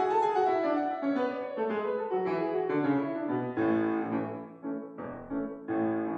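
Solo piano playing the opening of a zarzuela romanza accompaniment, a flowing line of notes and chords with fuller chords struck about halfway through and again near the end.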